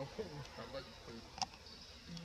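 Insects buzzing steadily under faint, indistinct voices, with one sharp click about one and a half seconds in.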